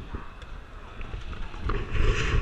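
Busy station concourse ambience: a steady hubbub of a crowd with a low rumble and a few faint clicks, no clear voice standing out.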